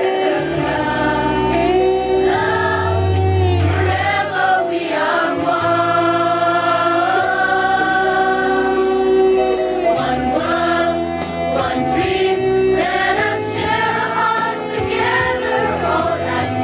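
A mixed school choir of girls and boys singing together, with long held notes.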